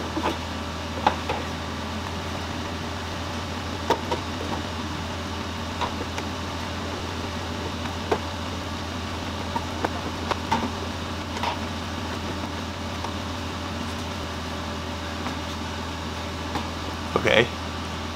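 Scattered light clicks and knocks of hands working in a car's engine bay, opening the airbox and fitting a drop-in panel air filter, over a steady low hum.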